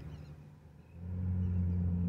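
A vehicle engine's low steady hum grows in about a second in and then holds at an even pitch.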